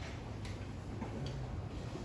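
Chalk tapping and scraping on a blackboard as words are written: a few short, faint strokes over a steady low room hum.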